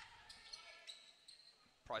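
Faint sound of a basketball game in play on an indoor hardwood court: the ball bouncing, heard as a few soft scattered ticks.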